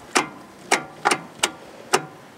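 About five sharp clicks from a starter solenoid as the key is worked, with the engine not cranking over. The owner takes this for poor battery connections.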